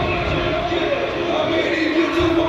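Indistinct voices over background music, steady throughout, with no distinct punches standing out.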